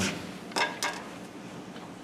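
Two short, sharp knocks about a third of a second apart, from handling tools at a wood lathe's tool rest, over a faint steady low hum.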